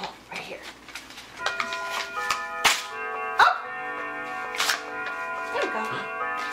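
A musical greeting card's sound chip playing a tinny tune once the card is opened, starting about a second and a half in, with sharp crinkles of paper and card being handled over it.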